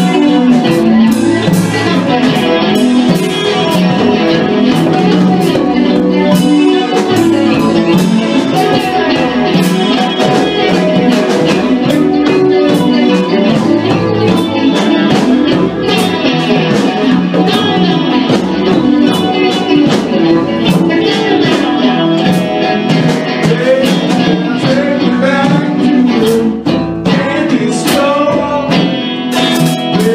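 Live band playing: electric guitar over a drum kit keeping a steady beat.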